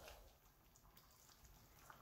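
Near silence, with a faint trickle of warm water being poured into a pan of simmering rice.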